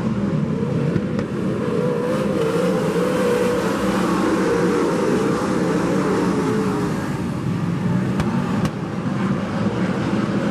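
Several winged sprint cars' V8 engines racing on a dirt oval, a dense, continuous engine drone whose pitch wavers up and down as the cars go around.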